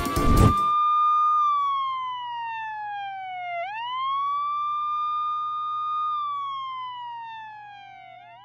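A siren wailing: a single tone that holds, slides slowly down in pitch, then sweeps quickly back up, twice, fading somewhat toward the end. Loud music cuts off just before it, under a second in.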